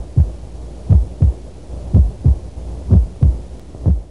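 Heartbeat sound effect: pairs of deep thumps, lub-dub, about once a second over a low steady hum.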